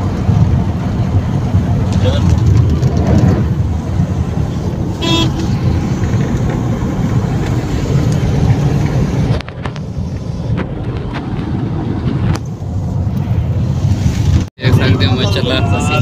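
Steady low rumble of a Toyota car's engine and tyres heard from inside the cabin while driving, the tachometer at about 2,000 rpm. The sound dips briefly and drops out sharply once near the end.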